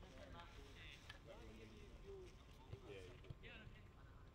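Faint, indistinct men's voices talking at a distance across the pitch, over a quiet background, with two small taps about three seconds in.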